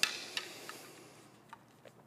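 A few light clicks and taps from squash rackets being handled, the sharpest right at the start, the rest fainter and scattered.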